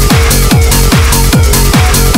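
Hard dance track playing loud: a heavy kick drum on every beat, each hit dropping in pitch, over a held synth note and bright high percussion.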